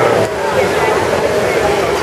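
Steady rush of the Trevi Fountain's falling water, mixed with the babble of a crowd of tourists.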